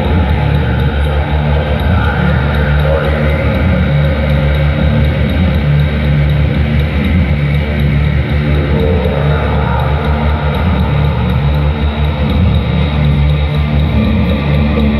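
Live band playing a loud, steady song with synthesizer and electric guitar over a strong low bass and a regular electronic beat.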